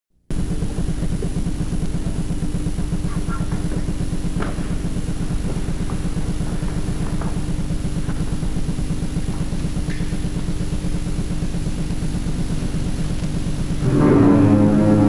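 Steady electrical hum and buzz with hiss from a VHS tape transfer, broken by a few faint clicks.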